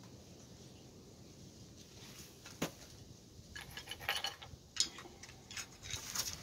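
Handling of a river cane spear shaft and a stone flake tool: a single sharp click about two and a half seconds in, then quick clusters of light clicks and rattles. The opening seconds are very quiet.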